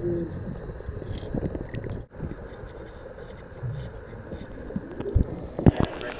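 Water sloshing and rumbling around a camera held at the water's surface, with a brief drop-out about two seconds in and a few sharp knocks near the end.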